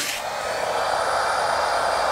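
Eureka Easy Clean 71B handheld vacuum running steadily, sucking air through its hose attachment: a steady rush of air with a thin high motor whine over it.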